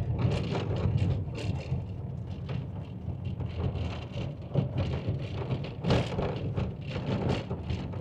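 Car driving on an unpaved gravel road, heard from inside the cabin: a steady low rumble of engine and road noise with irregular crackles and knocks from the tyres on loose stones.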